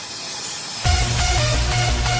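Background electronic dance music: a rising noise swell, then a heavy bass beat kicks in suddenly just under a second in.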